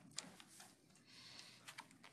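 Near silence, with a few faint clicks of typing on a laptop keyboard near the start and near the end.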